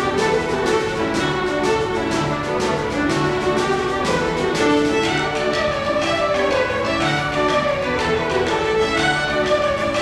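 Irish ceili band playing a jig together: a massed section of fiddles carrying the melody over a steady drum beat and piano accompaniment.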